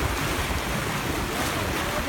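Wind buffeting the microphone over the steady rush of sea water washing and foaming along a sailing yacht's hull as it moves through the waves.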